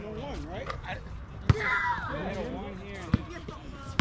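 Basketball bouncing on an outdoor hard court: three sharp bounces, the loudest about one and a half seconds in, then two more at uneven gaps.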